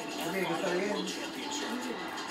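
Television commercial soundtrack played through a TV set: a voice over music, picked up from the room.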